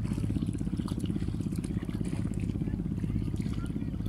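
A boat engine running steadily with a low, even throb.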